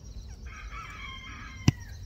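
A rooster crows once, a pitched call lasting under a second that starts about half a second in. Shortly before the end comes a single sharp click, the loudest sound.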